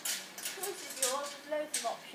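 A woman speaking, her words not made out clearly.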